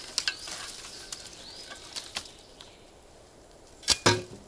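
Dry twigs, branches and dead grass crackling and snapping as they are handled and shifted, in scattered sharp snaps. Near the end, one loud sharp knock as a steel shovel blade is stabbed into the ground.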